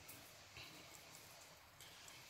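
Near silence: room tone with a few faint, soft handling ticks as a cut succulent rosette is turned in the hands.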